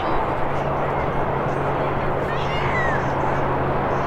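Outdoor ambience on a lacrosse field: a steady rush of noise with a low steady hum underneath. A little past halfway there is a short high-pitched shout from a player.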